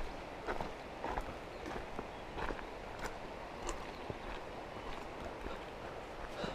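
Footsteps of hikers walking on a dirt forest trail, a soft regular tread at about two steps a second.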